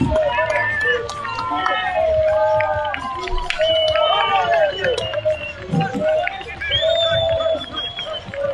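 Footballers shouting and cheering in celebration of a goal, several voices overlapping, some of them long held shouts.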